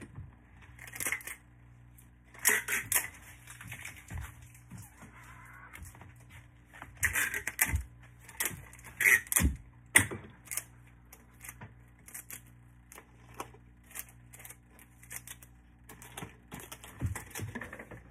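Clear adhesive tape being pulled off the roll and torn, and a cardboard gift box being handled: irregular crackles, rustles and sharp clicks, loudest in short bunches a few seconds apart.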